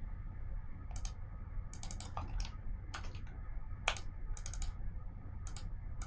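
Scattered clicks of a computer mouse and keyboard, about a dozen, some in quick pairs, over a steady low hum.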